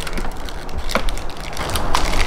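Plastic mains plug being pushed into a three-pin plug adapter: scratchy handling noise with two sharp clicks, one about a second in and one near the end.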